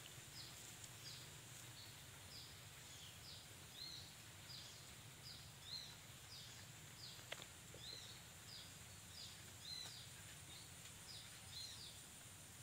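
A small bird calling over and over, faint, about two short high chirps a second, each dipping and then rising in pitch. One brief click about seven seconds in.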